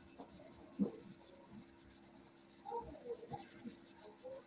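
Faint room noise over a video-call line: a steady low hum and hiss, one short knock about a second in, and a few soft rustling and handling sounds near the end.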